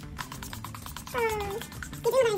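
A domestic cat meows once, a short call falling in pitch about a second in, over background music.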